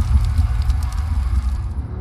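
Sound effects for an animated logo reveal: a deep rumble with a crackling, fire-like burst that fades out near the end, over a dark music bed.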